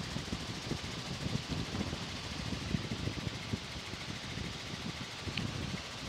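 Helicopter engine and rotor noise heard from inside the cabin, a steady low rumble.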